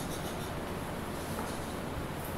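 A pen scratching on paper as figures are written out, over a steady low room hum.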